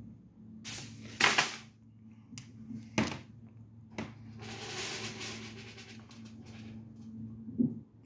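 Ion lifter (aluminium-foil and wire electrodes at about 200,000 volts) running: sharp crackles and snaps of high-voltage discharge, a cluster about a second in and single snaps near 3 and 4 seconds, then a stretch of steady hiss. A steady low hum runs underneath.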